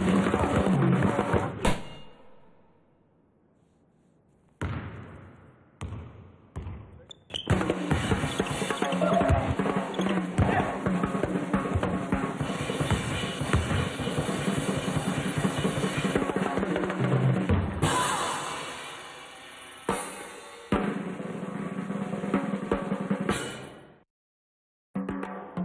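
Drum kit played in a fast improvised groove of snare rolls, bass drum and cymbals. It breaks off about two seconds in, returns as a few single hits, then picks up again densely and stops just before the end.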